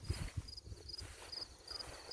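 Field crickets chirping faintly, short high chirps repeating a few times a second in a steady rhythm, with a low rumble underneath.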